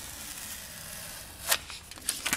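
Steady faint hiss of room tone, with one short ripping sound about one and a half seconds in as a display sticker is peeled off the front of a soundbar.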